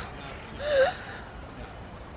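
A young child gives one short, breathy gasp of surprise about half a second in, ending in a brief rising voiced note.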